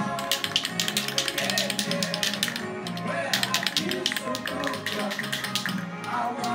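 A spray paint can being shaken, its mixing ball knocking inside in a fast run of sharp clicks that stops about a second before the end, over music with singing.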